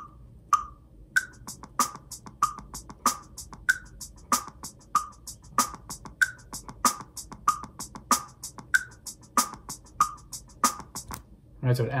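RhythmBot web app playing back a sampled drum groove: hi-hat and snare backbeat over a kick drum playing a random two-bar 16th-note rhythm, looping at a steady tempo. The strongest strikes fall about every two-thirds of a second, with quieter hits between, and the playback stops just before the end.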